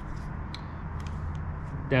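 A few faint ticks from a heated grip's wiring lead and plug being handled, over a steady low background hum.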